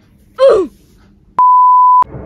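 A short vocal sound falling in pitch, then a steady single-pitch test-card beep for the colour bars, starting abruptly about one and a half seconds in and lasting to the cut.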